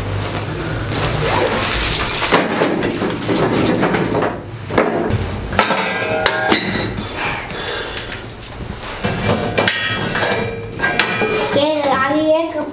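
Background music, with scattered wooden knocks and clatter of split firewood sticks being put down and handled at a small iron wood stove.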